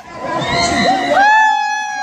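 Riders on a fairground ride screaming and shrieking, high-pitched cries that rise and fall, with one long shriek held through the second half.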